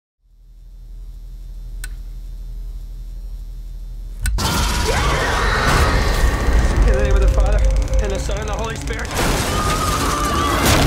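Horror trailer sound design: a deep bass rumble swells up out of silence, with two faint clicks, then about four seconds in a sudden loud hit opens into a dense mix of music, crashes and shattering with wavering voices over it.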